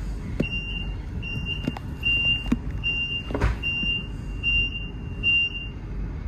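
Eurotunnel Shuttle compartment alarm signal played over the carriage loudspeaker: seven high-pitched beeps, a little over one a second. This is the alert that sounds when an incident is detected in the passengers' compartment. Beneath it runs the low rumble of the moving carriage, with a few knocks.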